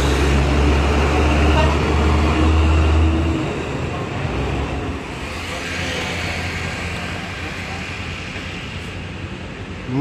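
Coach bus diesel engine running with a strong, steady low hum as the bus pulls away, dropping off sharply about three seconds in. Steady road traffic noise remains after it.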